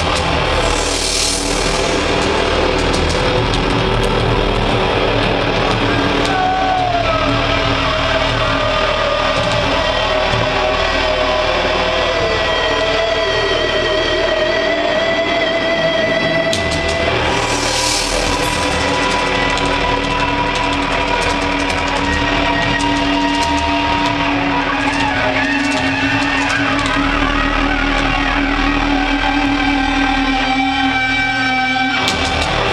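Loud amplified electric guitars on a live concert stage, holding droning, feedback-like notes. About seven seconds in, one note bends slowly downward in pitch.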